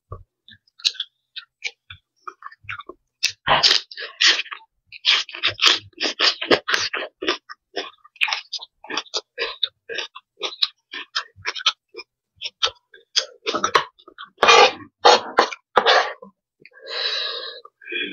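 Close-miked chewing of crisp fresh greens such as water spinach stems and lettuce: many quick, irregular crunches.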